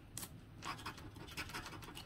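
Plastic scratcher tool scraping the coating off a paper scratch-off lottery ticket in a series of short, faint strokes.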